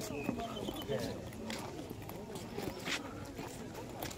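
Voices of people talking in the background, with footsteps scuffing on stone paving.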